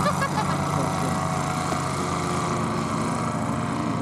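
Small engine of a paramotor trike flying overhead, running as a steady drone without change in pitch.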